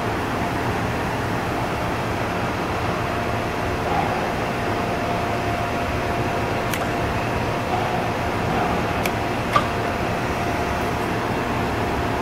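Sharp VH3 milling machine running with its horizontal spindle turning: a steady mechanical hum with a steady whine, and one sharp click about nine and a half seconds in.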